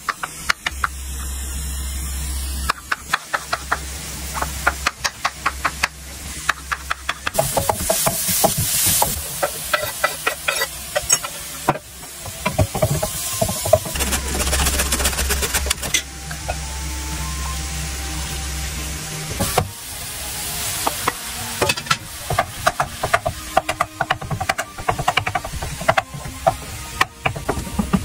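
A run of hand food-prep sounds. A knife chops button mushrooms on a wooden cutting board in quick repeated knocks, a zucchini is scraped down a metal hand grater, and a wooden spatula stirs minced meat and vegetables sizzling in a frying pan.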